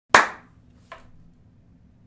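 A single sharp hand clap that rings briefly in the room, followed just under a second later by a much fainter short sound.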